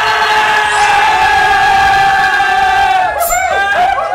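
Young men yelling in excitement, one long held shout of about three seconds, then a few shorter whoops near the end.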